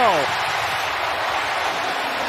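Football stadium crowd cheering a completed pass, a steady wash of crowd noise. The commentator's last word trails off at the very start.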